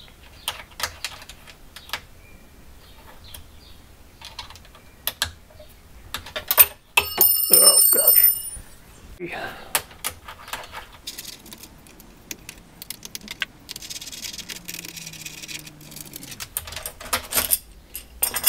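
Hex key unscrewing the bolts that hold a metal corner square to a CNC wasteboard: scattered small clicks and light metal clinks, with a brief bright metallic ringing about seven seconds in.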